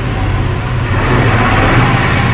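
A motor vehicle passing, a steady low engine hum with rushing tyre noise that swells to its loudest about one and a half seconds in.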